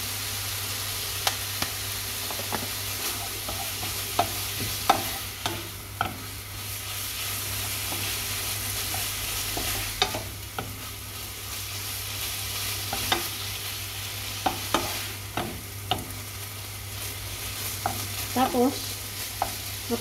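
Chicken breast sizzling in a non-stick frying pan over a gas flame, with a wooden spoon stirring it and knocking and scraping against the pan at irregular moments.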